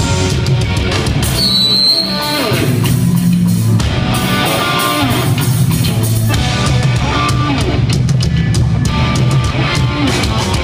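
Live punk rock band playing loud: electric guitars, bass and drum kit going steadily, heard from the audience.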